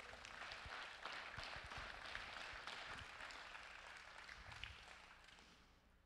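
Congregation applauding faintly, the clapping dying away toward the end.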